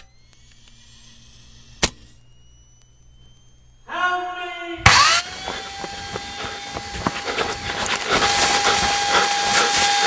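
Two sharp clicks over a faint low hum and a short ringing tone, then about five seconds in a chainsaw starts with a loud burst and runs on as a steady, noisy buzz with a whine held through it.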